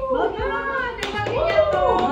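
Voices singing a birthday song around the cake, with some hand clapping.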